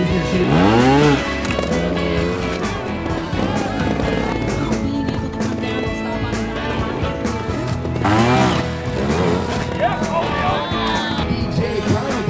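Trials motorcycle engine revved hard in two short blips, the loudest just after the start and another about eight seconds in, as riders hop the bikes up the obstacles. Guitar background music plays throughout.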